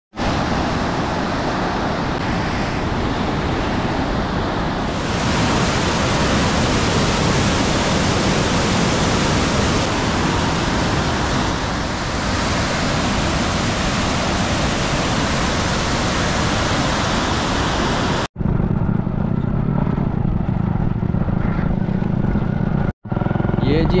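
Canal water rushing through the open gates of a cross regulator, a steady loud roar of churning white water. About three-quarters of the way through, a sudden cut replaces it with a lower, duller rumble.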